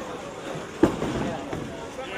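Bowling-alley background noise with a single sharp knock about a second in.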